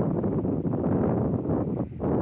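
Wind blowing across the microphone: a steady low rumble with no clear tone.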